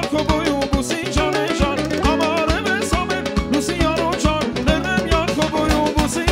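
Armenian folk-pop dance music in a fast 6/8 rhythm: a steady drum beat under an ornamented, wavering melody line.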